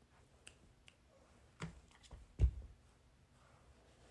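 A few light clicks over quiet room tone, with one louder soft knock about two and a half seconds in.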